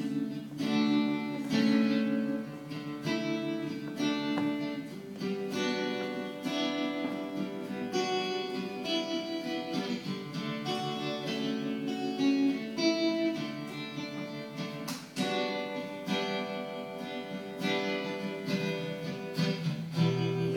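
Solo acoustic guitar playing the instrumental introduction to a song, chords picked and strummed at a steady pace.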